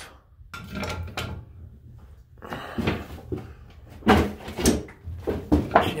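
Tongue-and-groove pliers handled on copper pipe fittings: a series of sharp metallic clicks and knocks, the loudest a little past four seconds in and several more close together near the end.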